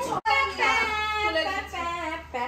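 A high voice singing a short tune in held, stepping notes, cutting out for a moment just after the start.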